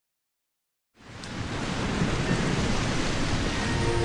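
Silence for about a second, then a steady rushing water noise with a low rumble fades in and swells louder: a rain or surf ambience on the soundtrack.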